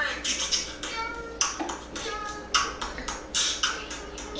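Mouth beatboxing: a loose rhythm of sharp hissing hi-hat and snare-like strokes, about three or four a second, mixed with short hummed or voiced tones.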